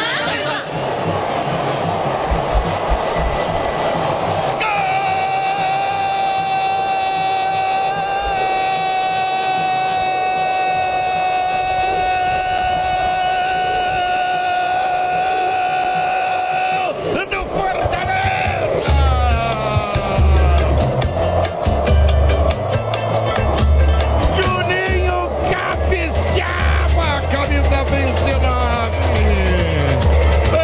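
A radio goal call. A voice holds one long note for about twelve seconds, then, about eighteen seconds in, a goal jingle with a heavy, pounding bass beat takes over, with voices over it.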